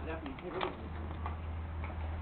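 Faint voices in the first moment, then a steady low hum of outdoor ambience.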